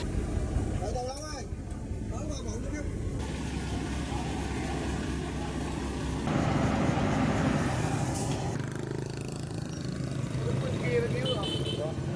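Road vehicle engine noise under scattered voices of people talking. The engine noise swells louder for about two seconds past the middle.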